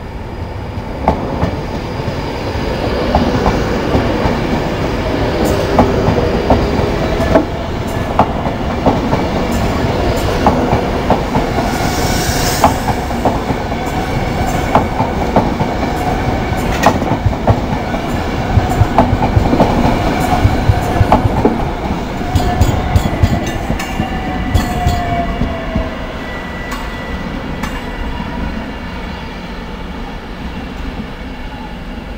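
Virgin Trains Class 390 Pendolino electric multiple unit running slowly past over the station pointwork: a steady rumble with a run of sharp wheel clicks over rail joints and points, and a whine that falls in pitch near the end.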